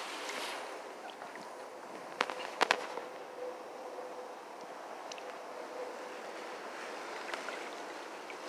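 Faint steady outdoor hiss, broken a little over two seconds in by a quick cluster of three or four sharp clicks or knocks.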